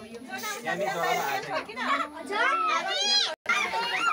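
Children and adults chattering and squealing excitedly, many high voices overlapping, with a short hiss of a party snow-spray can near the start. The sound drops out completely for a moment near the end.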